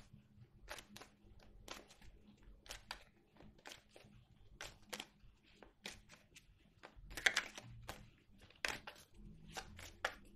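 A deck of Petit Lenormand cards being shuffled by hand: soft, irregular card slaps and rustles, about two a second, with a louder flurry about seven seconds in.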